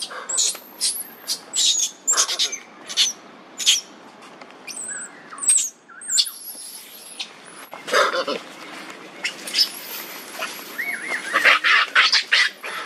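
Baby macaque crying in distress: many short, very high-pitched squealing cries in quick succession. They are the cries of an infant that has been bitten on the arm by an adult male.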